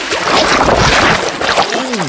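Water splashing and churning, a sound effect of a hooked fish thrashing as it is reeled in.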